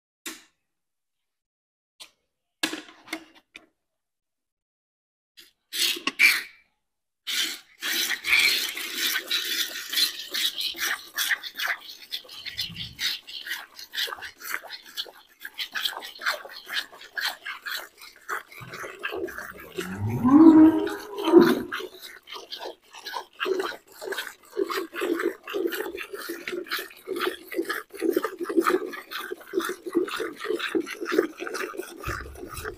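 Hand milking a cow into a metal bucket: rapid, rhythmic squirts of milk hitting the pail, starting about a quarter of the way in after a near-silent opening. A loud, short low call breaks in about two-thirds of the way through.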